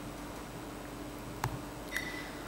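Quiet hall room tone: a steady faint hum with a thin steady tone through the sound system, and a single short click about one and a half seconds in.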